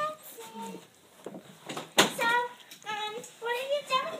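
A child singing unaccompanied in short, held high notes. The singing drops away for about a second and a half, then there is a sharp click about halfway through, and the singing starts again.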